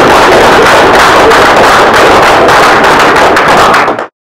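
Audience applauding loudly, then cut off abruptly at the very end.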